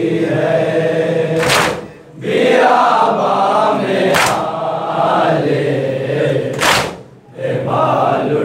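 Group of men chanting a nauha in unison, with a loud collective chest-beat (matam) about every two and a half seconds, three strokes in all. The singing breaks briefly twice.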